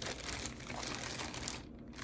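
Crinkling of a clear plastic kit bag with light clicks and taps of plastic model sprues as they are handled, dying down about a second and a half in.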